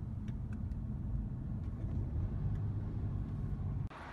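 Low, steady rumble of a car driving, heard from inside the cabin, with a few faint clicks in the first second. It cuts off suddenly just before the end.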